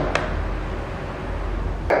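Light clicks of a plastic Nerf AccuStrike Quadrant toy blaster being handled on a wooden table, one just after the start and one near the end, over a steady hiss and low hum.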